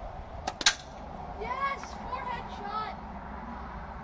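A homemade cup-and-balloon shooter fired once: a sharp double snap about half a second in as the stretched balloon is let go. Then a child's high voice calls out for about a second and a half.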